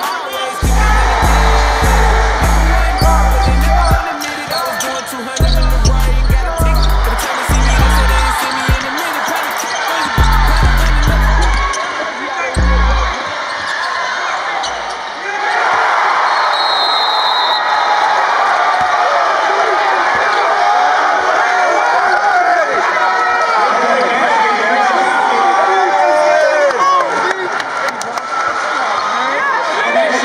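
Hip hop music with a heavy, thumping bass beat for about the first thirteen seconds, then a basketball arena crowd cheering and shouting, many voices together, for the rest.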